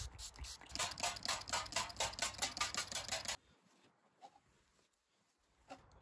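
Finger-pump spray bottle pumped rapidly, a quick string of short hissing sprays of cleaner onto car paint, stopping about three and a half seconds in.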